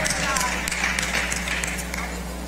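Church congregation responding with indistinct calls and scattered hand claps, over a steady low hum.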